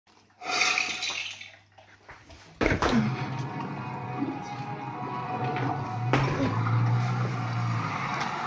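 Television programme soundtrack: a brief pitched sound first, then from about two and a half seconds in, music over a low steady drone.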